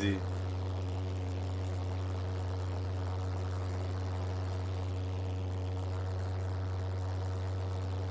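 Jet-engine go-kart's pulse jets running with a steady low drone over a light hiss, holding an even level throughout.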